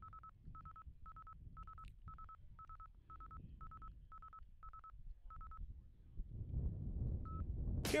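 A series of short electronic beeps, all on one fairly high pitch, about two a second and a dozen in all. They stop after about five and a half seconds, and one last beep comes near the end. A low rumble runs underneath and grows louder in the last two seconds.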